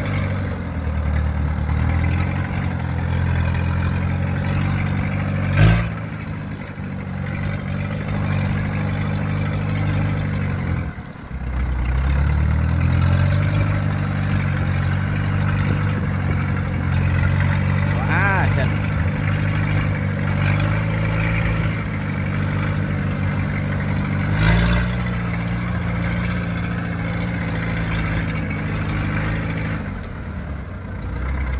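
Kubota DC-70 combine harvester's diesel engine running as it drives along a levee, its note rising and falling with speed and load. The engine note sags briefly about eleven seconds in, then picks back up. A sharp knock sounds about six seconds in and another near the end.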